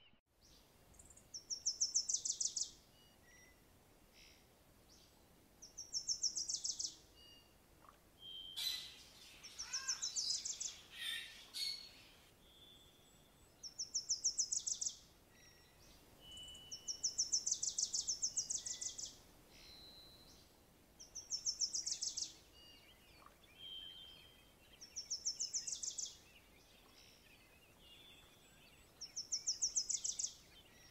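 A songbird singing the same short, rapid, high trill over and over, about one phrase every four seconds, with a few brief whistled notes between phrases.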